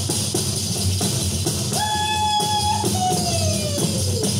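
Ensemble of hand-held tambourines (panderetas) and frame drums played together in a steady rhythm, each skin stroke carried by jingling. About halfway through a voice holds one high note for about a second, then a second note slides steadily downward.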